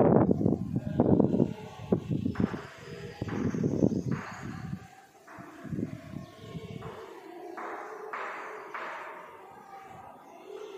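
Chalk scratching on a blackboard in short writing strokes of about half a second each, a few seconds in and again near the end. Low muffled knocks and rumble are the loudest sound in the first seconds.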